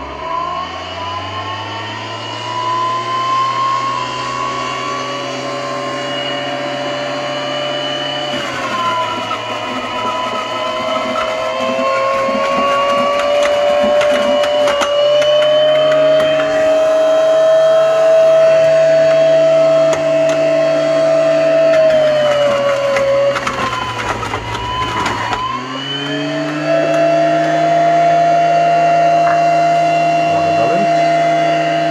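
Centrifugal juicer's electric motor spinning up and running with a steady whine. Its pitch sags twice as produce is pushed down the chute against the spinning cutter, with crackling and grinding of the pulp, then picks back up near the end.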